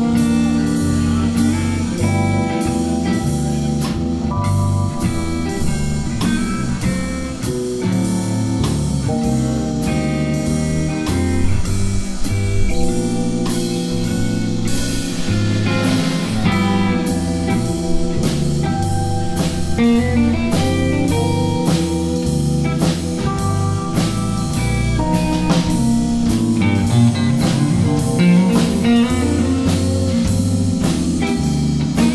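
Live blues band playing a slow, jazzy shuffle: electric guitar, electric bass, Nord keyboard and drum kit, with a steady beat of about two drum hits a second. A cymbal wash comes about halfway through.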